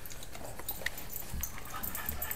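Faint dog sounds from small dogs being petted, with scattered light clicks and rustles.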